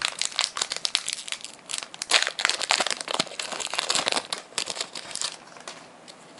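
Pokémon trading card booster pack wrapper being crinkled and torn open, a dense crackling that dies down about five seconds in.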